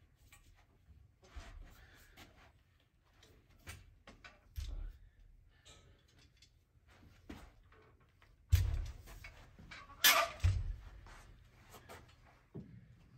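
Tubular steel frame of a folding piano repair truck (piano tilter) being unfolded by hand: scattered light clicks and rattles of metal parts, then two louder clanks about a second and a half apart near the end.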